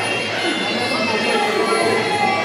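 Spectators' voices at ringside: many people talking and calling out over one another in a steady din.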